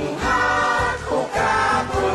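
Background music: a choir singing with instrumental accompaniment.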